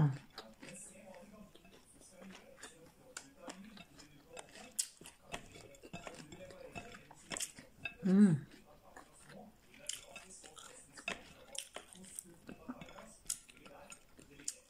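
Close-up chewing of a raw vegetable salad of cucumber, tomato and red pepper, with scattered small crunches and clicks of pieces being picked from a plate. A short hummed "mmm" about eight seconds in.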